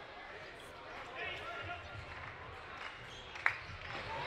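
Quiet floorball arena ambience: faint voices in the hall and the light clicks of sticks on the plastic ball, with one sharper knock about three and a half seconds in.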